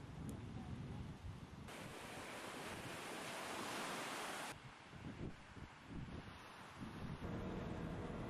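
Small waves breaking and washing up a sandy beach: a steady hiss of surf for about three seconds in the middle, with wind buffeting the microphone before and after it.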